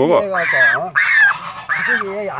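African goose being held in a man's hands, honking about three times in quick succession. These are distressed cries at being handled.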